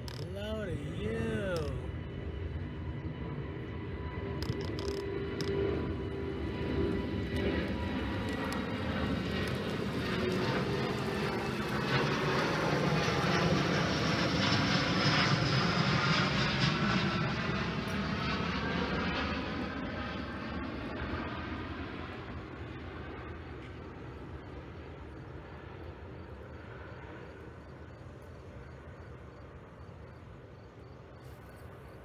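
Jet airliner passing over, its engine noise swelling to a peak about halfway through and then fading away, with a sweeping, phasing quality as it goes by.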